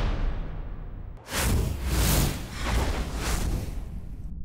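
Broadcast graphics transition sound effects: whooshes over deep bass hits, coming in several surges, one at the start, a bigger one from about a second in, and another near the end.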